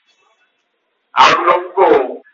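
About a second of silence, then a man's speech resumes.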